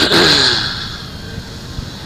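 A man's voice trailing off at the start, then a pause filled with steady background hiss from the recording.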